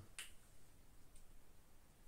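Near silence: a faint single click just after the start and a fainter tick about a second in, from fingers handling the plastic SAE connectors of a power cable.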